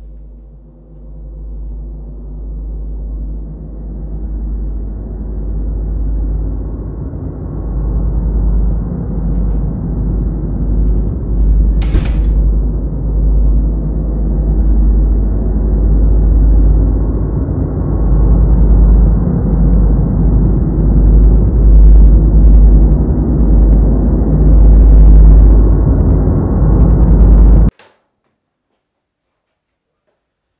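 A horror-style soundtrack drone: a low rumble that swells steadily louder, with one brief sharp hiss about halfway through, then cuts off abruptly just before the end.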